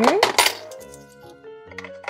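A quarter dropped into the coin slot of a plastic toy vending machine, clinking as it falls inside in a short clatter in the first half-second. Background music plays underneath.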